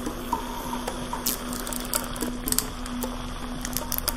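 Quiet background music: one held low note with a few short higher notes over it, and scattered faint clicks.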